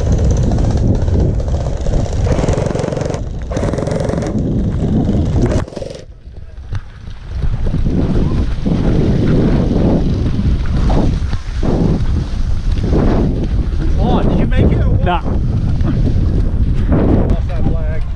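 Loud, low wind and movement noise on a body-worn action camera as the wearer moves across the field. Voices call out a few times in the second half.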